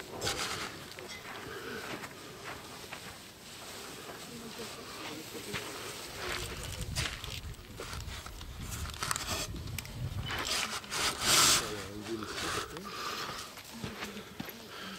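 Puff adder's heavy body dragging and scraping over loose sand close to the microphone, an irregular rubbing rustle. A short, louder rush of noise about 11 seconds in.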